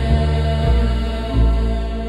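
Music with low, deep chanting, held notes changing every half second or so, beginning to fade out near the end.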